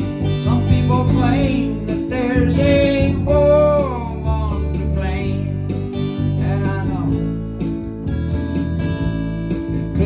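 Electronic keyboard and electric guitar playing a relaxed, mid-tempo song over steady sustained chords. A melody line glides and wavers in pitch twice in the middle, from about one to four seconds in and again around five to seven seconds in.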